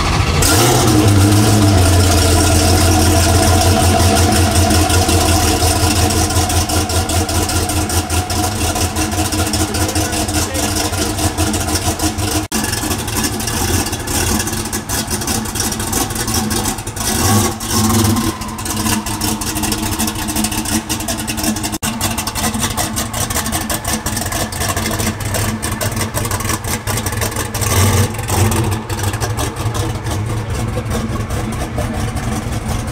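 Hennessey Venom F5 Roadster's twin-turbo V8 running on a cold start, loud and high at first, then settling to a steady idle, with short blips of throttle about two-thirds of the way through and again near the end.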